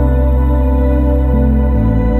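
Ambient new-age background music: soft, sustained tones, with the low notes shifting about two-thirds of the way through and near the end.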